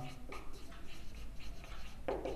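Marker pen writing on a whiteboard: faint, irregular short strokes of the tip across the board.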